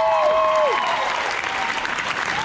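Audience applauding loudly, with several people whooping in rising-and-falling cheers that die away about a second in while the clapping carries on.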